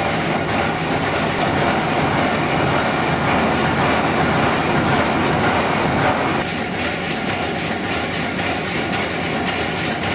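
Water-powered grist mill machinery running: a flat belt turning a large wooden pulley amid steady, dense clattering and rattling of the mill's works. About six seconds in the noise drops a little and changes character.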